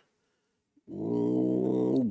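Silence for almost a second, then a man's voice holding one long, level hesitation sound ('yyy') for about a second before his speech resumes.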